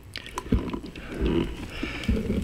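Handling noise from a piston-filler fountain pen being turned in the fingers: a few small clicks and soft low bumps as the piston knob is twisted clockwise.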